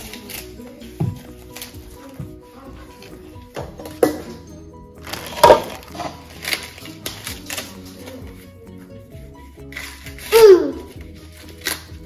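Corn husks being torn and stripped off ears of sweet corn by hand: repeated crisp tearing and crackling, the sharpest about four to seven seconds in, over steady background music. A short voice with a falling pitch is heard about ten seconds in.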